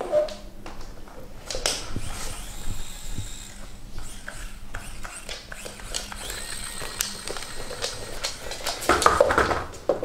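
Small electric motor of a battery-powered, self-moving rubber-ended dog toy bone whining in spells, with knocks and clatter as it bumps and rolls on a wooden floor under a dog's nose and paws. The clatter is loudest near the end.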